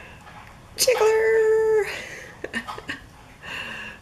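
A woman's long, held 'ooh' at one steady pitch, lasting about a second, starting about a second in.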